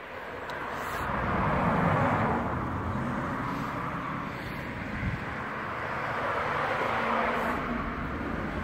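Cars passing on a nearby road: tyre and engine noise swells to a peak about two seconds in, then holds as a steady rush, swelling a little again near the end.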